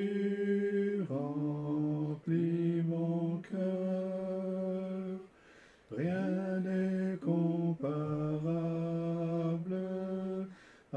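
A slow French hymn being sung, in phrases of long held notes with short breaks between them.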